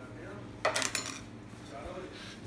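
A brief metallic clatter of small metal objects, lasting about half a second, a little over half a second in.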